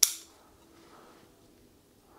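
A single sharp snip of bonsai pruning scissors cutting a wild olive twig, right at the start.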